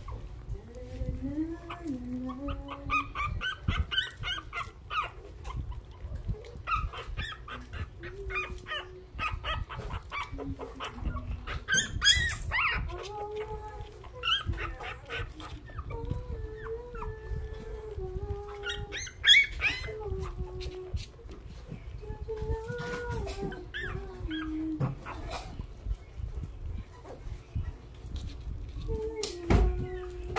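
A litter of newborn puppies crying and whining almost without pause, thin wavering cries that rise and fall and overlap, a few louder ones standing out, with scattered small clicks and rustles; the crying of hungry newborns.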